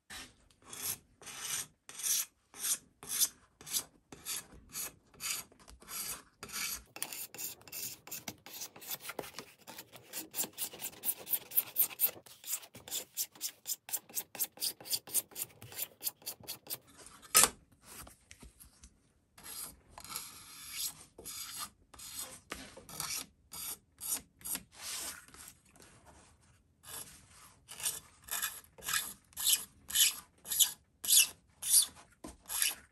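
Steel card scraper drawn along the edge of a tortoiseshell pickguard in repeated short scraping strokes, breaking the sharp edge after cutting. The strokes come about two a second, quicken in the middle and pause briefly just past halfway, then resume.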